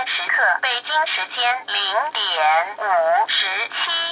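The talking LED clock kit's voice chip speaking a time announcement through its small built-in speaker, a continuous synthetic-sounding voice in Chinese, which the owner believes announces the time and mentions Beijing.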